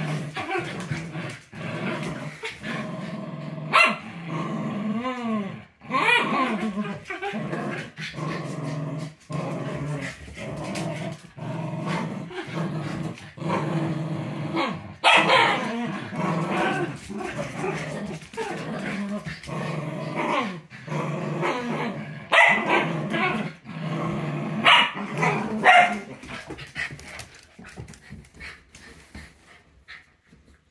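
Two small dogs play-fighting, growling almost without a break and letting out sharp barks now and then. The sound dies away over the last few seconds.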